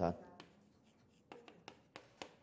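Chalk writing on a chalkboard: a few short, faint taps and scratches of the chalk strokes, starting a little over a second in.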